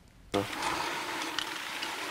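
A short near-silence, then about a third of a second in a steady rustling with faint crackles begins: corn leaves and the husk of an ear of corn rustling in a cornfield.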